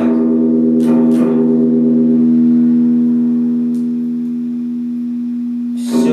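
Electric guitar: two picked strokes about a second in, then a chord left to ring out and slowly fade, before fresh picking starts near the end.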